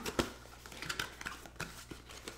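A cardboard product box being opened by hand: a sharp click just after the start, then a few lighter scrapes and taps of cardboard.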